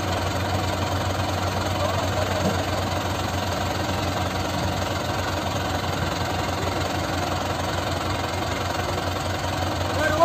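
Diesel engine of an HMT 5911 tractor running steadily at idle with a fast, even low throb.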